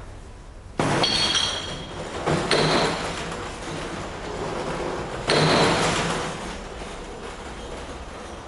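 Glassware clinking and clattering in three sudden bursts, each ringing briefly: about a second in, near two and a half seconds, and a little after five seconds.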